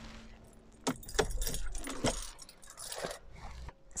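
A bunch of car keys jangling at the ignition, a handful of light metallic clinks. A low rumble sits underneath and stops shortly before the end.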